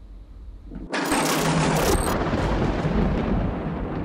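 A sudden loud thunder-like boom about a second in, rumbling on with a crackling edge.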